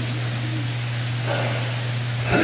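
Steady hiss with a low, even hum underneath: the background noise of the recording and sound system in a pause between spoken words.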